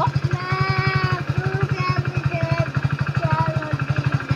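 Motorcycle engine idling with a fast, even low beat, under a person's voice.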